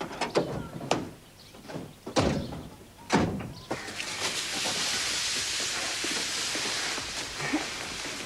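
A few sharp knocks and thuds, then a steady hiss that starts about four seconds in and holds.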